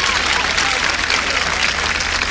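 A large audience applauding steadily.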